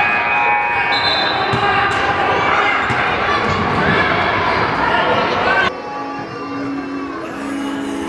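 Gym crowd noise with voices and basketballs bouncing. It cuts off abruptly a little after five seconds in, and quieter music with steady low notes starts.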